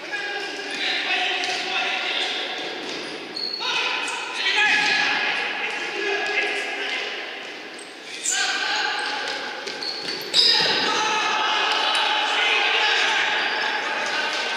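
Futsal players shouting to each other, ringing in a large echoing sports hall, with the ball being kicked and bouncing on the wooden floor. The sound jumps suddenly louder about ten seconds in.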